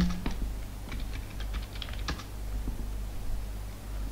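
Computer keyboard keys clicking, a run of separate keystrokes thickest in the first two seconds and then sparser: a sudo password being typed at the terminal and entered.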